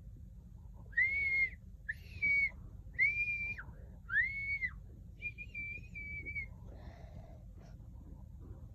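A whistle blown in four short blasts about a second apart, each rising and falling slightly in pitch, then one longer, steady blast.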